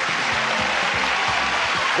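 Studio audience applauding over game-show music, steady for the whole stretch.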